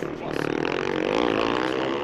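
Racing motocross motorcycles' engines running hard, a droning note that wavers up and down in pitch.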